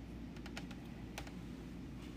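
A few quick, light taps, like fingernails on a phone's touchscreen, clustered about half a second in and again just after a second in, over a steady low hum.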